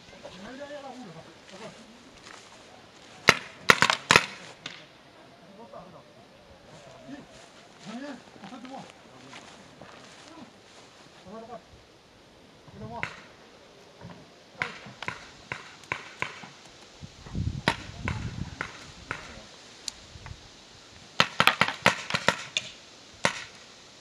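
Paintball markers firing: a quick burst of sharp shots about three to four seconds in, scattered single shots through the middle, and a rapid volley near the end, with faint voices calling across the field.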